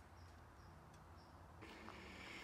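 Near silence: faint outdoor ambience with a low steady hum and a few faint, short high-pitched tones; the background hiss rises slightly about one and a half seconds in, where the shot changes.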